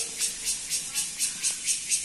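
Cicadas calling in the trees: a loud, high-pitched buzzing hiss that pulses rhythmically about four to five times a second.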